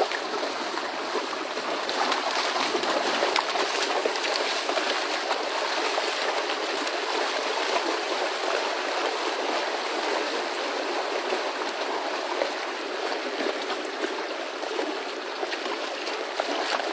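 Steady rushing and splashing of water as a herd of long-horned cattle wades through shallow water.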